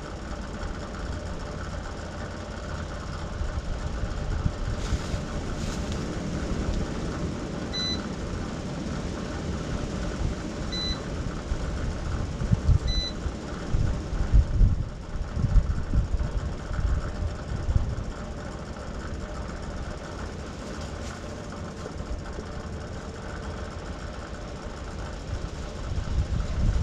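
Engine idling steadily, a low rumble with a steady hum. Three short high beeps sound about a third of the way in, a few seconds apart, and a few louder low bumps come near the middle.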